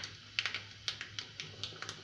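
Irregular sharp clicks and pops, a few a second, from a small pan of liquid frothing on the boil on a gas stove.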